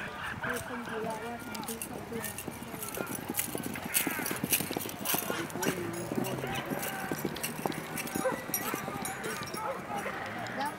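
Hooves of ridden horses on grass, many short irregular knocks, amid the voices of people on the field.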